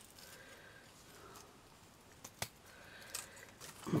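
Faint handling of small paper craft flowers and their wire stems, with two sharp little clicks close together about two and a half seconds in from a pair of scissors.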